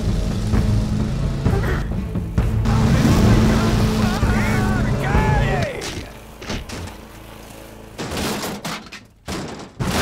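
Ride-on lawnmower engine running with a steady low drone that falls away about six seconds in, followed near the end by a few sharp knocks.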